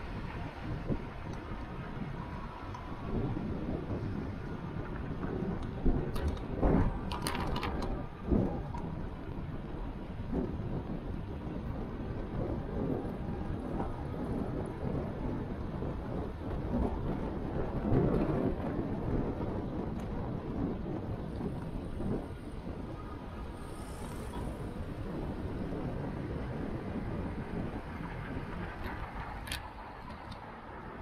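Wind buffeting a moving camera's microphone over steady road and traffic noise while riding along a street, with a few sharp knocks about a quarter of the way through.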